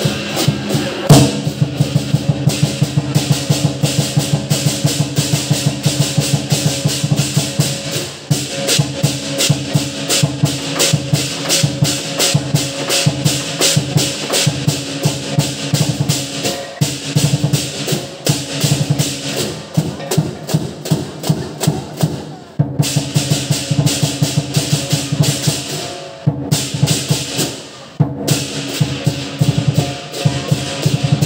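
Lion dance percussion: a drum beaten in a fast, steady beat with clashing cymbals ringing over it, broken briefly three times in the last third.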